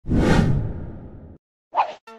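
Intro whoosh sound effects: a long swelling whoosh with a deep low end that fades away and cuts off, then, after a short gap, a brief second swish.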